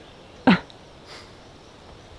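A single short "uh" from a man about half a second in, brief and falling in pitch.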